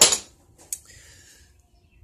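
A brief breathy rush of noise at the start, then a single light click of metal against metal about two-thirds of a second in, as a steel piece is handled on the metal workbench.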